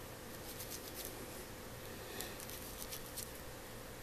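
Light handling noise: small scattered clicks and rubbing as a small wooden model engine block is turned in the fingers, with a cluster of clicks in the second half. Under it runs a faint steady hiss with a thin, steady hum.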